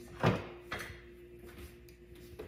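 Knocks and clicks from rummaging through a kitchen cabinet for a spice jar: one sharp knock about a quarter second in, then a few lighter clicks. A faint steady hum runs underneath.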